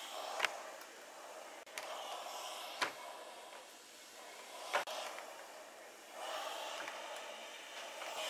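A clothes iron being slid and pressed over knit fabric on a padded ironing board, heard as a faint rubbing hiss. Three short sharp taps come within the first five seconds.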